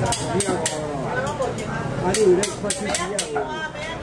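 People talking nearby, with a series of sharp metal clinks from a wire frying basket of fried donuts knocking against the rim of a wok of oil as it is shaken to drain.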